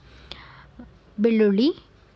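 Speech only: a woman says a single word a little past halfway, after a brief soft breathy sound.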